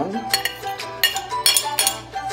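A metal spoon clinking and scraping on a plate as chopped onion is pushed into a stainless steel bowl, several sharp clicks in the second half, over background music.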